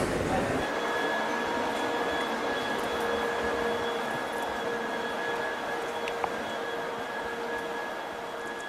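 Steady hum of a London Underground train standing at a platform: an even mechanical drone with a few thin, steady whining tones held over it.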